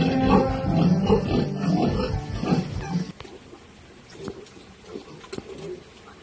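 Background music for about three seconds, then it cuts off, leaving domestic pigs with the piglets in the pen making short, faint grunts.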